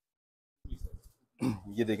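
Near silence, then about half a second in a few short, low bumps and rustles of handling noise as fabric is unfolded close to the microphone. A man starts speaking near the end.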